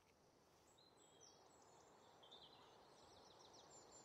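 Near silence: faint background hiss with a few very faint, short high chirps scattered through it.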